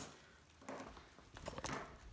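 Faint crinkling of plastic air-cushion packing as a cat chews and noses at it, with a few sharp crackles about a second and a half in.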